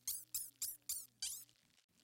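A cartoon squeak sound effect for a rabbit: five quick high chirps, each sliding down in pitch, about three a second, stopping a little over a second in, over a faint low musical drone.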